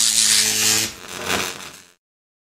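Electric buzz-and-crackle sound effect for a neon-style logo flickering on. A sudden loud hiss with a steady hum cuts off just under a second in, followed by a shorter swell that fades out.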